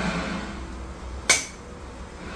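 A single sharp tap a little over a second in, a small hard prop knocking against the hard tabletop, over a low steady room hum.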